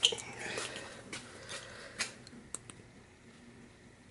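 Faint handling noises: a few small clicks and knocks spread out, the sharpest right at the start, with the background dropping quieter in the second half.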